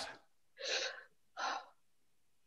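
Two short, soft breaths from a person, about a second apart, between pauses of silence.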